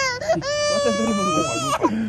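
Infant crying: a short cry at the start, then one long, high wail of over a second that breaks off near the end.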